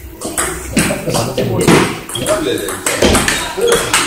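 Table tennis rally: the ball clicks off the rackets and pings on the table several times in quick succession, with people talking.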